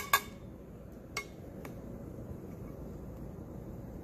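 Silver-plated vanity pieces clinking as they are handled and lifted off a tray: two sharp clinks at the start, then two fainter taps about a second in, then only quiet handling.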